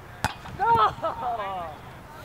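A single sharp knock of a football being struck, followed by a person's loud, drawn-out wordless shout whose pitch rises and falls for about a second.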